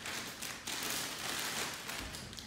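Clear plastic bag crinkling and rustling as a pair of leather boxing gloves is pulled out of it, a continuous crackle that eases off near the end.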